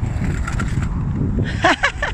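A steady low outdoor rumble, with a short high-pitched voice calling out near the end.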